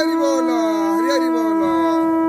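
Conch shells (shankha) being blown: one holds a single steady note while a second wavers over it, its pitch swooping down and back up several times.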